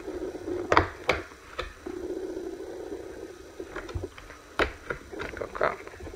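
Cardboard booster box and foil booster packs being handled by hand: a few sharp taps and clicks with light rustling, over a faint low steady drone.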